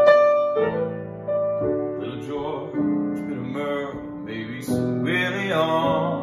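Grand piano played in jazzy chords, with a man's voice singing over it.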